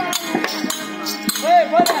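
Terukkoothu folk-theatre music: rapid percussion strokes mixed with the jingling of a dancer's ankle bells, and a short melodic phrase, sung or played, about a second and a half in.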